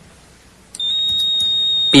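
Electronic quiz lockout buzzer giving one steady high-pitched beep, a little over a second long, starting about three-quarters of a second in: a contestant has buzzed in to answer the toss-up.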